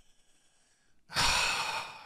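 A man's long, loud sigh about a second in: a breathy exhale that tails off.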